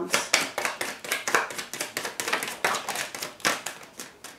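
A tarot deck being shuffled by hand: a quick, uneven run of sharp card slaps and flicks.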